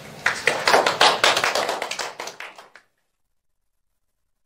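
Small audience applauding, with individual claps audible, swelling shortly after the start and thinning out, then cut off suddenly about three seconds in.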